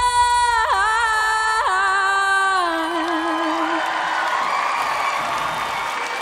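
A young female singer holding a long high note, stepping through two pitch changes, then ending the song on a lower note with vibrato. An audience starts cheering and whooping under the last note and keeps on after it stops.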